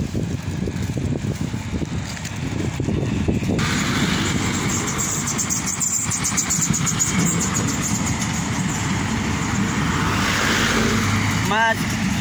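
Road traffic: vehicle engines and tyre noise with a low rumble, joined a few seconds in by a steady rushing hiss.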